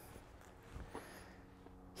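Near silence: faint outdoor background with a low steady hum, broken by one soft, short sound just under a second in.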